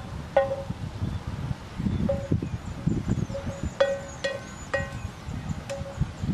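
Metal spatula clanking against a frying pan while stir-frying morning glory, about half a dozen irregular strikes, each leaving a short ringing tone. A low rumble runs underneath.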